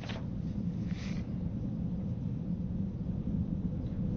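Steady low rumble of a Proton rocket's first-stage engines, heard from far off as the vehicle climbs toward maximum dynamic pressure.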